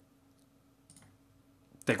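Two faint computer mouse clicks, about half a second apart, over near-silent room tone.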